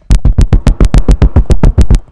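Rapid, even tapping, about eight sharp knocks a second, struck hard right at the microphone to demonstrate the sound of a lock being bumped with a bump key.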